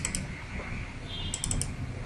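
Computer mouse double-clicked twice, each a quick cluster of sharp clicks, the second about a second and a half after the first, as folders are opened.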